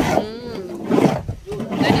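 People's voices talking and calling out, with one long wavering vocal call near the start.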